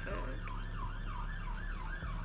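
Emergency-vehicle siren in yelp mode: a fast rising-and-falling wail, about three sweeps a second, over a low steady hum.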